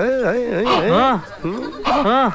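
A man's voice in a loud, warbling comic wail, its pitch rising and falling about four times a second; it breaks off a little after a second in and starts again near the end.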